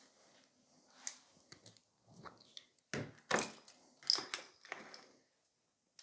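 Nail gel jars and a lid being handled on a table: a scattering of light clicks and knocks, about a dozen, most of them in the middle few seconds, as the jars are moved and opened.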